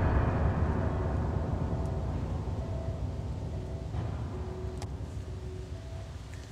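Dark film-score drone: a deep rumble that fades slowly, with faint held tones above it.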